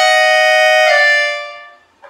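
Piano accordion playing held chords on the treble reeds, moving to a new chord about a second in, then the sound fading away to a pause at the end of the phrase.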